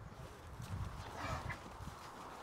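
Beef bulls moving about in a pen, with faint, irregular hoof steps and thuds on a dirt floor.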